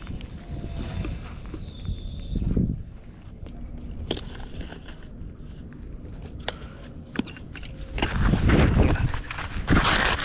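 Fishing line whizzing off a spinning reel during a cast, a high whine that falls in pitch over about two seconds. It is followed by light footsteps and tackle handling on sandy gravel, with louder rustling near the end as the rod is grabbed.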